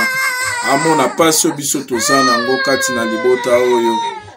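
An infant crying in long, high wails that slowly fall in pitch: one trails off early in the clip and another starts about halfway through and runs on to near the end, over a man's voice.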